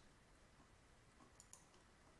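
Near silence with two faint clicks of a computer mouse, close together about one and a half seconds in.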